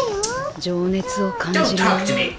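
Japanese anime character voices: high, expressive voicing, with a pitch that swoops down and back up at the start, then short held syllables.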